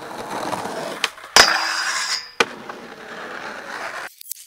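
Skateboard wheels rolling on concrete, then the pop about a second in. A loud clank as the trucks land on a steel handrail, followed by a grinding scrape of just under a second with a ringing metallic tone: a 50-50 grind down the rail. The wheels slap down on the ground and roll away.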